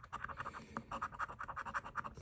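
A coin scratching the coating off a lottery scratch-off ticket in rapid short strokes.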